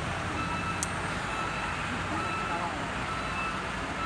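Komatsu hydraulic excavator's diesel engine running steadily, with a faint electronic alarm beeping at regular intervals.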